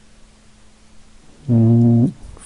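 Low background for about a second and a half, then a man's voice holding one steady, level-pitched hum for about half a second near the end, a hesitation sound before he reads out the question number.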